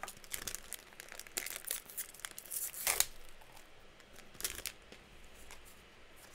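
A foil trading-card booster pack wrapper being torn open and crinkled in the hands, in a series of short crackling rips, the loudest about three seconds in.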